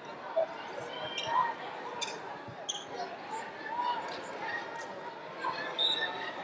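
Background noise of a crowded gymnasium: indistinct voices of many spectators and officials overlapping, with scattered short squeaks and a few sharp knocks from the activity in the hall.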